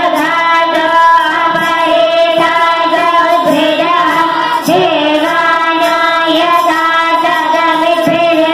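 Children's voices singing a Hindu devotional chant in long, held notes.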